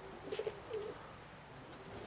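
Faint pigeon cooing: two short coos within the first second.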